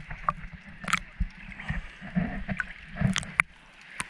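Seawater sloshing and gurgling around a camera held at the surface, half in and half out of the water, with irregular splashes and sharp little clicks.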